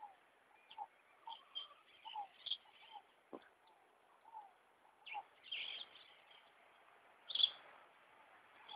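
Birds calling: many short chirps scattered through, a single sharp click a little over three seconds in, and a louder call near the end.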